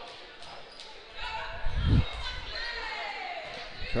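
A basketball dribbling on a hardwood gym floor during live play, with a heavy low thump about two seconds in and voices and shouts from players and the crowd underneath.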